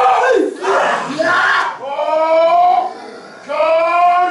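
Group of men shouting a haka chant in unison, with long held calls; the voices drop away briefly about three seconds in, then come back loud.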